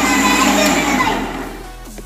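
An electric mixer grinder runs loudly, blending a jar of banana milkshake, then is switched off and dies away about a second and a half in. Background music plays throughout.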